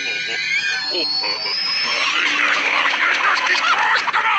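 Cartoon soundtrack played backwards: high-pitched squeaky creature voices and sound effects, with a long thin tone rising in pitch in the first half.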